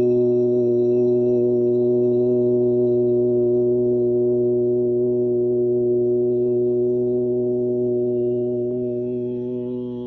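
A man chanting one long mantra note, held steady on a single low pitch and fading near the end.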